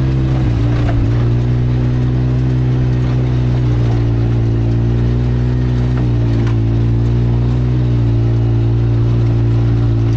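Side-by-side UTV engine running at a steady pitch as it drives a rough dirt trail, heard from the driver's seat, with a few faint knocks from the bumpy ground.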